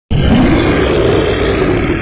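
A loud, rough rumbling sound effect accompanying an intro logo animation, starting abruptly and holding steady.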